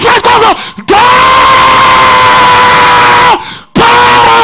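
A man's voice shouting into a microphone, distorted through the PA. It starts in short rapid bursts, then holds one long steady yell for about two and a half seconds, then another long yell begins near the end.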